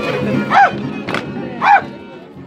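Two loud, short shouted calls about a second apart over violin dance music, with a sharp snap between them. The music thins out near the end.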